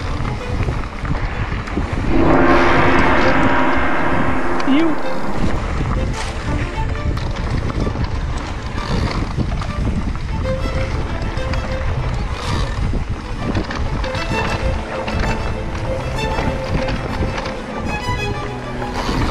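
Riding noise from a mountain bike on a dirt trail: continuous tyre rumble and wind buffeting the camera microphone. A loud, sustained pitched sound cuts in about two seconds in and lasts about three seconds.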